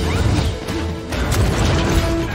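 Action-film battle sound effects: a dense run of crashes and impacts laid over music with held notes, starting abruptly just before and staying loud throughout.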